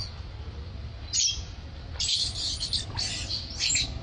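Infant macaque squealing in short high-pitched bursts, four cries spread over a few seconds, while being held and groomed by its mother.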